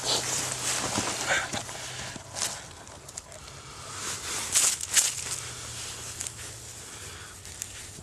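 Irregular rustling and crunching of dry, snow-dusted leaf litter and jacket fabric as tinder is handled and laid on the forest floor, with a few sharper crunches about halfway through.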